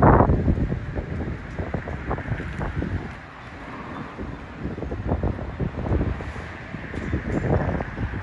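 Wind buffeting the microphone, a rough low rumble that dips quieter about three seconds in, then picks up again.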